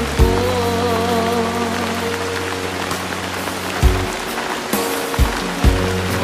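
Slow Tagalog love ballad: a singer's held, wavering note for about the first two seconds, then an instrumental passage with sustained chords and a few drum hits near the end, over a steady hiss of rain.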